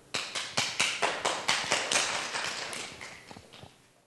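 Audience applauding, starting suddenly and fading away over about three seconds.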